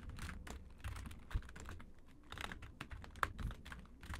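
Typing on a computer keyboard: a quick, uneven run of keystroke clicks as code is entered.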